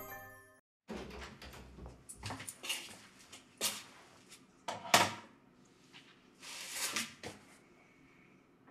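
A short music jingle ends, then objects and a cabinet at a bathroom sink are handled: a string of uneven knocks and clacks, the loudest about five seconds in, with a brief hiss near seven seconds.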